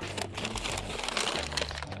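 Paper takeaway bags and the foil-lined lining of an insulated delivery bag crinkling and rustling as a hand rummages inside it, a busy run of small crackles.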